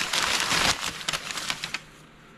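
Crumpled newspaper packing rustling and crinkling as it is pulled apart by hand to unwrap an item; it stops shortly before the end.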